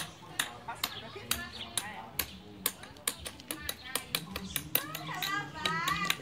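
Faint, distant voices of people talking outdoors, with many sharp irregular clicks and taps scattered throughout.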